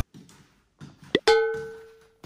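Background music cuts off abruptly. A little over a second later comes a quick rising swoosh, then a single bell-like ding that rings out and fades over about half a second.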